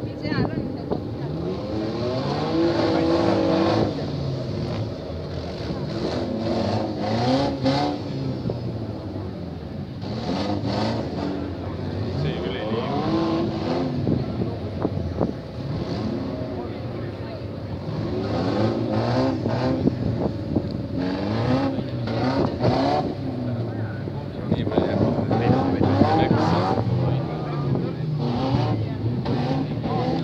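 Several demolition-derby cars' engines revving and running together across the arena, their pitch rising and falling again and again, with scattered sharp bangs of cars hitting each other.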